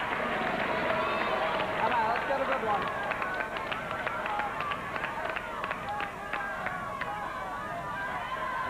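Game-show prize wheel spinning, its pegs clicking against the pointer, with the clicks slowing and spacing out until the wheel comes to rest near the end. Voices call out over it.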